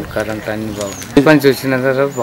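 A man speaking, with a short high bird chirp behind his voice about a second in.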